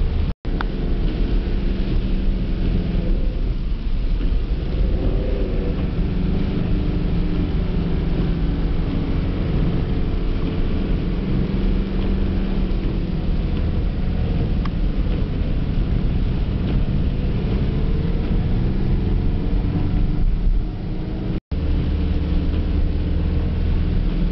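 Car engine running steadily, heard from inside the cabin, with its pitch drifting slowly up and down, over a constant hiss of tyres on a wet road. The sound cuts out for an instant twice, just after the start and about three seconds before the end.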